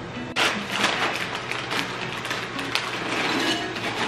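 Background music, joined about a third of a second in by the irregular crinkling of a plastic snack-chip bag being handled and poured into a bowl.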